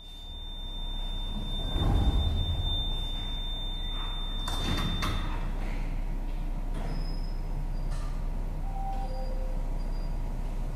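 Lyon funicular car's sliding doors closing at the station: a steady high warning tone sounds for about four and a half seconds over a low hum, with a loud clatter about two seconds in and another about five seconds in.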